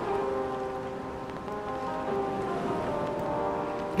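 Background music with sustained, steady tones. Under it is a faint wet swishing of thick pancake batter being stirred in a glass bowl.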